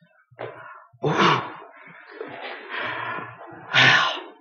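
A man's grunts and breathy vocal noises, not words, while bending to pull a shoe back on: a loud burst about a second in and another near the end.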